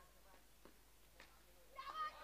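Near silence with a few faint soft clicks, then a person's voice starts near the end.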